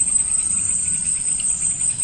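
A steady, high-pitched insect drone, like a chorus of crickets, running on without a break.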